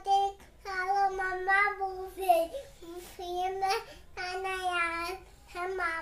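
A young child singing a nursery rhyme solo, with no backing music, in short held phrases.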